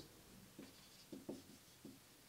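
Faint scratching of a marker pen on a whiteboard as a word is written by hand, a few short strokes with brief pauses between them.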